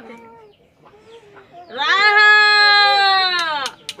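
A woman's long, drawn-out chanted call, one held note that rises, holds for about two seconds and falls away, with two sharp clicks near the end.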